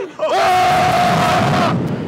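A rider's long yell held on one high pitch, over loud wind rushing across the microphone as the reverse-bungee ride capsule flies through the air. Both stop together about three-quarters of the way through.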